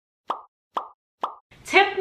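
Three short pop sound effects, evenly spaced about half a second apart, each a quick click with a brief tail; a woman starts speaking near the end.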